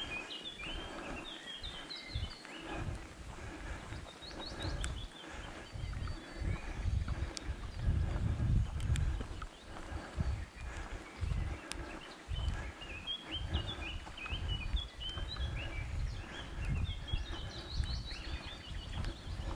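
Woodland songbirds singing, a steady run of short high chirping notes repeated throughout, with a low uneven rumble underneath.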